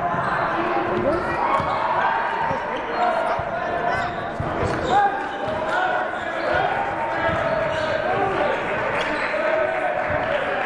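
A basketball bouncing on a hardwood gym floor during play, with many overlapping voices of players and spectators calling out in a large, echoing gym.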